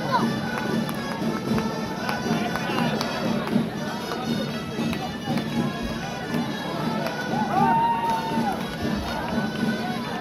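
Outdoor folk music on a reedy shawm-type wind instrument over a steady drum pulse, with crowd chatter all around.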